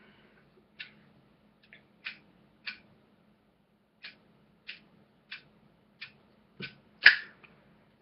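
Zippo lighter's flint wheel struck again and again without lighting: about ten short, sharp strikes a half-second to a second apart, the last one near the end the loudest. The lighter is almost out of fluid.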